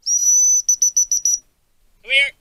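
High-pitched gundog whistle blown to handle a cocker spaniel: one long steady blast of about half a second, then a run of about five quick pips.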